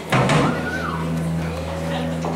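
Live rock band striking up: a loud attack just after the start, then a held low note with an electric guitar note that slides down in pitch around the middle.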